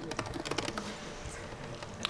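Typing on a computer keyboard: a quick run of keystrokes that thins out after the first second.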